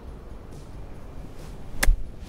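A standard 58-degree golf wedge striking a ball out of firm rough on a high lob shot: one sharp click near the end, the club sliding under a ball that sits up in the grass.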